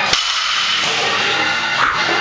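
An 87.5 kg barbell with blue plates set down on a rubber gym floor, landing with a single thud just after the start. Background music plays steadily throughout.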